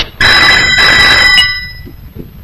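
A telephone ringing: one loud ring of steady tones lasting about a second, then dying away.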